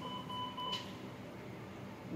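A single electronic beep from a bedside patient monitor: one steady tone held for just under a second, then only faint room hum.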